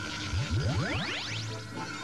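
Cartoon magic sound effect for a genie's wish being granted: several whistling tones sweep rapidly upward together, from very low to very high within about a second, over background music.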